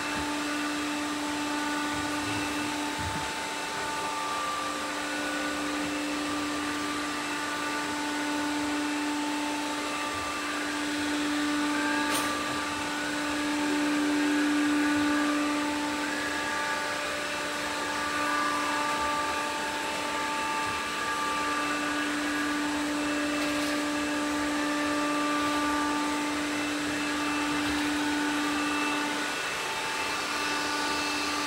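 Robot vacuum cleaners running across a hardwood floor: a steady motor hum with several whining tones, swelling to loudest about halfway through as one robot passes close.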